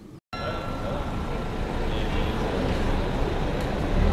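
Town street traffic noise, a steady wash of passing vehicles, coming in abruptly after a brief moment of silence near the start.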